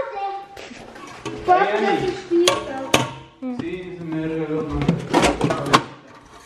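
Indistinct voices with a few sharp clinks as a metal biscuit tin is handled in a metal springform cake pan.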